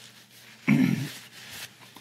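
A dog gives one short bark about two-thirds of a second in, over a quiet room.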